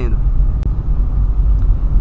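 Steady low rumble of a Volkswagen Polo on the move, heard from inside the cabin: engine and road noise while driving.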